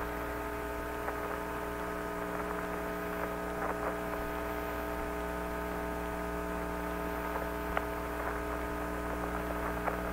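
Steady electrical hum with a faint hiss on the open radio voice channel between transmissions. There is one faint click about eight seconds in.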